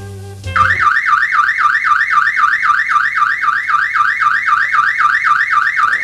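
Door alarm going off as an alarmed door is opened: a loud electronic tone warbling fast, about five sweeps a second, starting about half a second in as the music cuts off.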